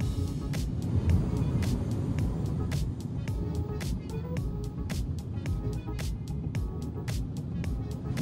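Background music with a steady, quick percussive beat.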